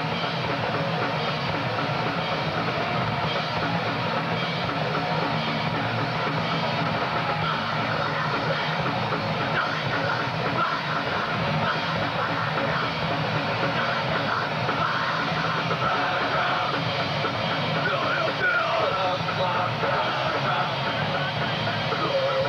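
Hardcore punk band playing live: distorted electric guitars, bass guitar and drum kit driving a loud, dense song.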